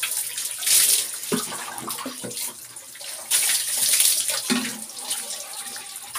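Water poured from a dipper over a person's head, splashing down in two main pours, about a second in and again from about three seconds, with smaller splashes between.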